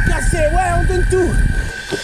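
Mostly a man speaking over a low rumble of wind and tyres on a dirt forest trail, with a steady high note from background music; the rumble drops away near the end.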